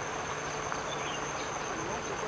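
Steady high-pitched drone of insects calling, two even tones held without a break, with faint voices murmuring underneath.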